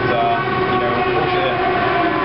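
A steady, loud mechanical drone with several held tones and no breaks.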